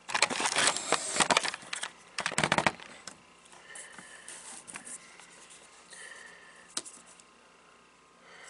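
Rustling, crackling handling noise from multimeter test leads and a small sensor being picked up and moved over a paper chart on a bench. It is loudest in the first couple of seconds, then falls to faint scattered clicks.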